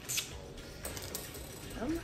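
Faint clicks and light rustling as a boxed set of reusable chopsticks and a plastic-wrapped pack are handled.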